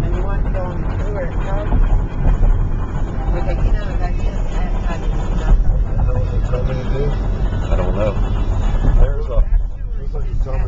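Road and engine noise inside a moving car's cabin: a steady low rumble, with indistinct voices talking over it.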